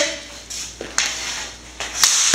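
A hockey stick flipping a small ball off a concrete floor, then one sharp crack about a second in as the stick whacks the ball out of the air.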